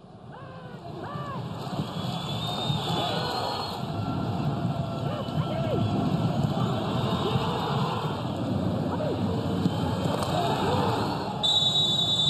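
Live sound from a football match in a stadium with no crowd: players' shouts and calls over a steady noisy background, fading in over the first two seconds. Near the end a referee's whistle sounds one shrill blast about a second long.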